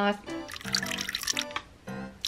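Water poured from a plastic measuring jug into the small plastic tub of a toy mini washing machine, splashing for about a second, over background music.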